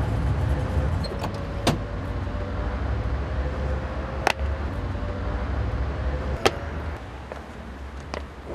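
Low steady rumble of a vehicle running, with a faint steady tone and three sharp clicks, about a second and a half, four and six and a half seconds in.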